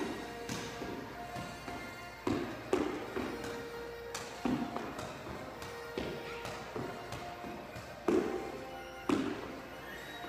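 Music plays with steady held notes while about seven irregular thuds and taps of feet and a footbag on a hardwood court floor ring briefly in the enclosed court.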